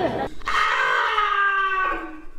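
A long held voice-like cry, several overtones together, gliding slowly downward in pitch for about two seconds after a short bit of speech at the start.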